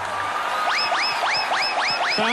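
A TV show's opening theme music, electronic in style: a quieter start, then from about a third of the way in a run of short rising swoops repeated about three times a second.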